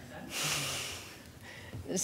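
A person breathing close to a microphone: a breath out through the nose about half a second in, then a sharp intake of breath near the end.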